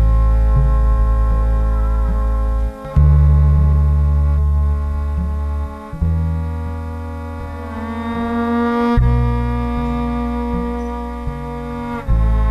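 Electric upright bass bowed in slow, long low notes, a new note about every three seconds, with steady higher tones held above them.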